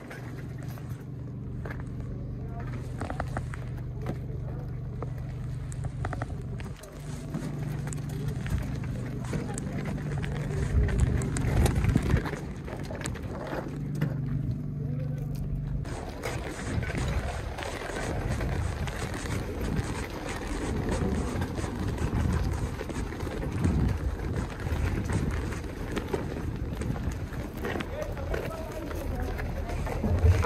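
Outdoor background chatter of a crowd of people talking in the distance. A steady low hum runs under it for the first half and stops about halfway through.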